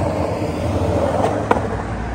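Skateboard wheels rolling steadily over asphalt, a continuous rumble, with one sharp click about a second and a half in.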